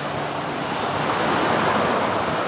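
Steady sea-shore ambience: surf washing on the beach, mixed with wind.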